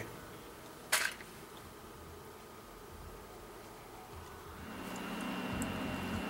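A single sharp click about a second in, then faint room tone. Near the end a steady low hum of bench electronics comes in, with a thin high-pitched whine.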